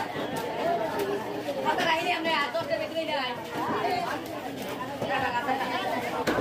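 Several people talking over one another at close range, with a few brief knocks among the voices.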